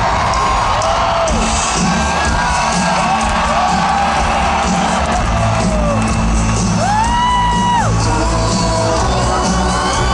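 Live band music played loud over a festival sound system, recorded from within the crowd: the instrumental intro of the song before the vocals come in, with the bass and beat filling out about five seconds in. Crowd cheering and whoops sit over the music.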